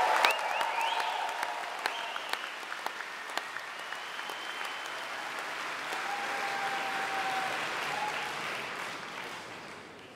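Concert audience applauding, with a few held calls from the crowd over the clapping. The applause swells again partway through and fades out near the end.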